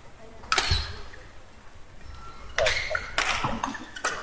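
Badminton rally: sharp racket hits on the shuttlecock, one about half a second in and two more about half a second apart past the middle.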